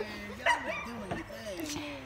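Indistinct talking, voices rising and falling in pitch without clear words.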